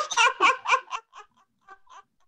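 A woman laughing: a quick run of short laugh pulses in the first second that fades away, then a few faint breathy ones near the end.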